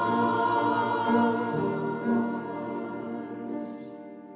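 Mixed church choir singing a slow passage in parts, the voices holding long notes and dying away in the second half, with a short hiss near the end.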